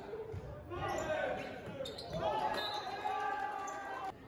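Volleyball players shouting and calling during a rally in an echoing gymnasium, with a few dull thuds of the ball being played.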